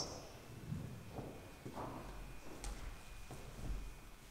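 Quiet hall room tone with a low rumble and a few faint scattered knocks and shuffles.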